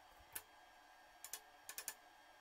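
Faint metal clicks and taps as a square steel tube is set against a steel brake pad backing plate on a steel table: a single tick, a pair about a second in, then a quick run of three or four near the end.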